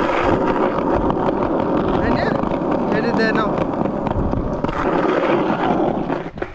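Skateboard wheels rolling over a rough asphalt path, a steady loud rumbling roll with wind noise on the microphone. A few brief high chirps come through about two and three seconds in.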